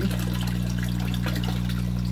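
Water from an aquaponics bell siphon's outlet pipe pouring and splashing steadily into the fish tank: the siphon has started and is draining the grow bed. A steady low hum runs underneath.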